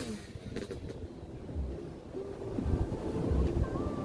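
Wind buffeting the microphone in gusts, with low rumbles and a faint steady tone near the end.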